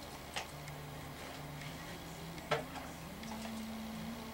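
A paintbrush striking a canvas hung on a wall: two sharp taps, the first near the start and the second about two seconds later.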